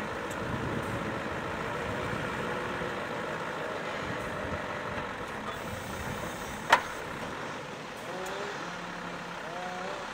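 Scania hook-lift truck's diesel engine running at low revs as the loaded truck creeps forward. A single sharp snap comes about two-thirds of the way through.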